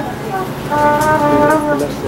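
Live band music: a steady brass-like note held for about a second near the middle, over a busy background of other instruments.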